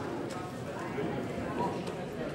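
Faint background murmur of many voices, with no single close talker.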